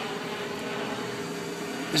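Steady background noise with a faint, even hum.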